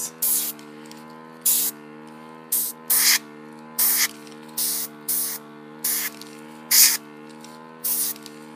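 Airbrush firing short bursts of air to blow wet alcohol ink across a tile: about ten quick hisses, irregularly spaced. Under them runs the steady hum of the airbrush's small compressor motor.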